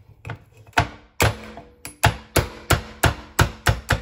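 Metal meat-tenderizer mallet striking Dungeness crab legs on a wooden cutting board, cracking the shells. A series of sharp knocks, about a dozen, coming faster in the second half at roughly three a second.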